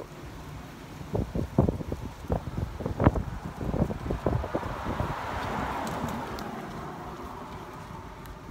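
A car passing on the street, its tyre and road noise swelling to a peak and fading over a few seconds, after a run of soft knocks and rustles of handling and wind on the microphone.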